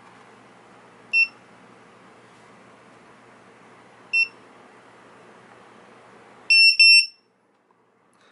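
ViFLY Beacon lost model alarm's buzzer giving short, high single beeps about three seconds apart, in its pre-alarm state after a detected crash, then two longer beeps in quick succession near the end.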